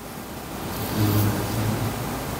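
A steady hiss of background noise, with a faint low hum coming in about a second in.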